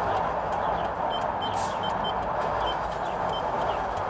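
Short high beeps from a handheld card payment terminal's keypad as keys are pressed, about six over a few seconds, over a steady background hiss.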